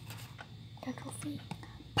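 Faint whispering and a few quiet voice sounds, over a low steady room hum.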